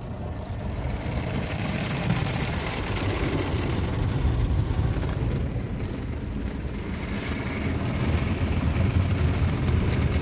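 Water jets from a PDQ ProTouch touch-free car wash hitting the car's roof and windows, heard from inside the cabin as a dense hiss over a low rumble. The spray builds up in the first second, eases a little in the middle and swells again near the end as the gantry passes.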